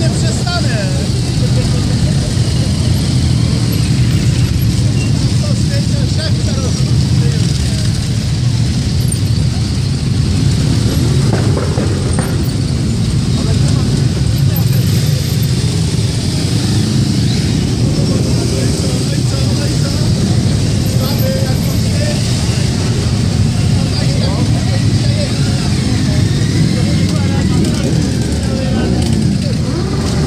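Many motorcycle engines running at low speed together as a column of motorcycles rolls past, making a steady low drone with no break.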